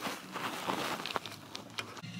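Cardboard sorbet box being handled and opened: scattered light clicks and rustling of the cardboard.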